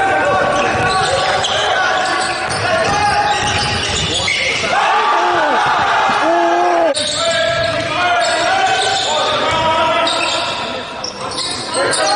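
Live game sound in a gymnasium: a basketball bouncing on the hardwood court, with players' voices echoing in the hall.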